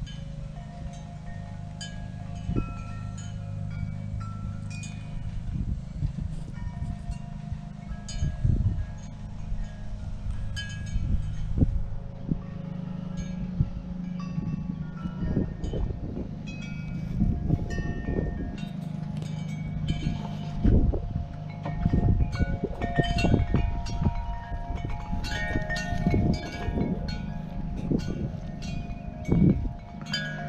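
Wind chimes ringing irregularly in the breeze, with many overlapping struck tones of different pitches. Wind gusts buffet the microphone with an uneven low rumble.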